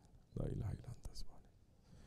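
A man's voice softly reciting an Arabic prayer phrase, close to a whisper, starting about a third of a second in and stopping after about a second.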